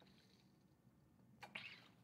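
Near silence while a person drinks from a water bottle, with one short breathy rush of noise about one and a half seconds in.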